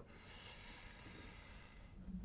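Near silence: faint, steady room hiss in a pause between speech.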